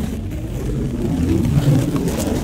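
A sheet of paper being flexed and handled close to a microphone: a steady, low, rumbling rustle that swells a little in the second half.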